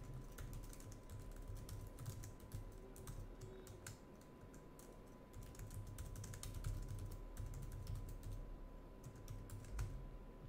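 Typing on a computer keyboard, faint and close to the desk microphone: quick runs of keystrokes with a short pause about halfway through.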